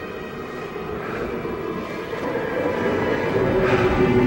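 A commercial soundtrack: a low, noisy rumble that grows steadily louder, with sustained music notes coming in near the end.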